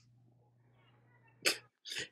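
Near silence, then two short, sharp bursts of breath or voice from a person, about a second and a half in and again just before two seconds, similar to a sneeze.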